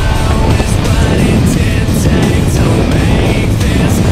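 Background rock music with a steady drum beat.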